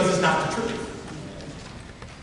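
A man's preaching voice, ending a phrase about half a second in, followed by a pause with faint room noise.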